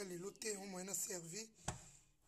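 A person's voice in short pitched phrases, followed by one sharp click near the end.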